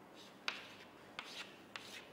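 Chalk writing on a chalkboard: a sharp tap of the chalk about half a second in, then a few short scratchy strokes as the letters are drawn.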